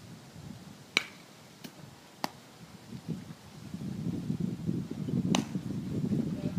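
Four short, sharp clicks, the loudest about a second in, the next two close behind it and the last near the end, over a low rumbling noise that builds through the second half.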